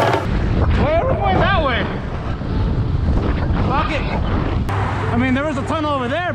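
Wind buffeting an action camera's microphone while cycling through city traffic, a steady low rumble, with voices calling out over it a few times.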